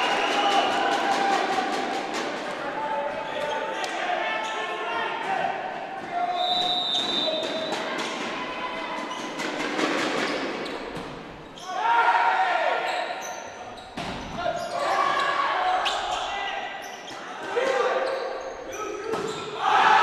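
Indoor volleyball rally: repeated sharp smacks of the ball on hands and the floor, with players calling and shouting and a brief high squeak about six seconds in, all echoing in a large gymnasium.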